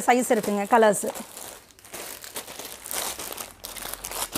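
Clear plastic garment bags crinkling and crackling as plastic-wrapped children's clothes are handled and moved about. A busy run of rustles sets in about a second in and carries on.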